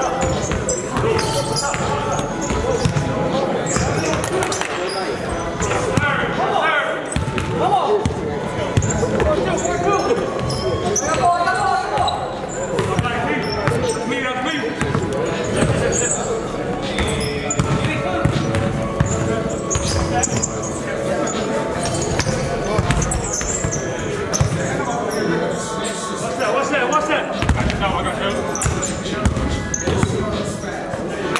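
A basketball bouncing again and again on a hardwood gym floor, mixed with players' indistinct voices, in the echo of a large gymnasium.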